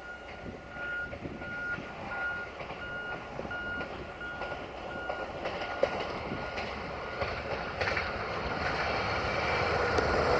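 Siemens Desiro VT642 diesel multiple unit approaching, its engine and running noise growing steadily louder. A high electronic beep repeats about twice a second and is buried under the train after the first half.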